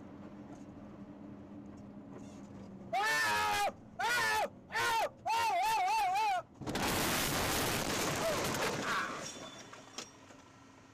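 Over a low vehicle hum, a person screams in four high-pitched bursts, the last one wavering up and down. A loud crashing noise follows and fades over about two seconds.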